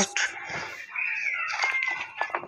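A high-pitched animal call in the background, starting about a second in and falling slightly in pitch over about a second.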